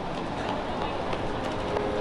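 Railway station platform ambience: indistinct voices of people nearby and footsteps over a steady background hum, with a few faint clicks.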